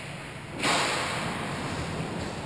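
Ice hockey skate blade scraping across the ice: a sudden hiss about half a second in that fades away over the next second or so.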